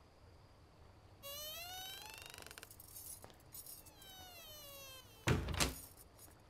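Wooden door's hinges creaking as it swings open, a long rising squeak followed by a slower falling one, then a heavy thud near the end.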